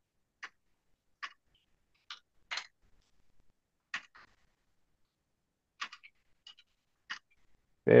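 Scattered computer keyboard keystrokes: about ten single, irregularly spaced clicks with silence between them.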